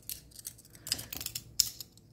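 Two Kudu folding knives having their steel blades swung open by hand, giving a handful of short metallic clicks and scrapes about halfway through.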